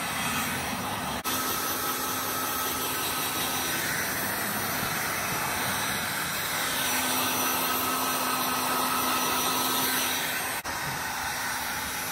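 Wagner HT1000 heat gun on its highest setting, its fan and element running with a steady blowing noise as it heats window tint film to shrink it onto curved glass. It breaks off briefly about a second in and again near the end.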